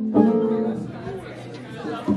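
Live guitar music: a chord is struck just after the start and rings out, fading within about a second, under a murmur of crowd chatter.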